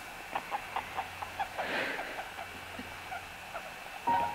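Guinea pig making soft little squeaks held against a face, a quick series of about five a second, then sparser. There is a breathy rustle about halfway through.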